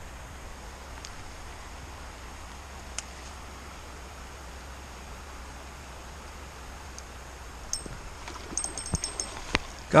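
Steady hiss of a small creek's flowing water. Near the end come faint high-pitched ticking and a few sharp clicks.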